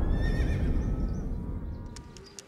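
A horse whinnying once, a wavering call that falls in pitch over about the first second, while background music fades out beneath it.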